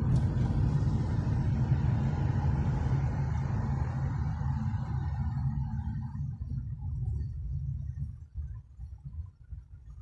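Low rumble of a car's road and engine noise heard from inside the cabin in slow traffic. A hiss of tyre noise fades away about halfway through, and the rumble thins and becomes uneven near the end.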